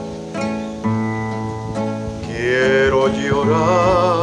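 Acoustic guitar playing the accompaniment between sung lines, plucked bass notes with strummed chords over them. A brief wordless sung note glides up and down in the middle.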